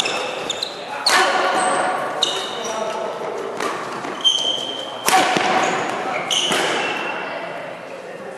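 Badminton doubles rally: shuttlecock struck by rackets, sharp hits about once a second, with short high shoe squeaks on the court mat between them.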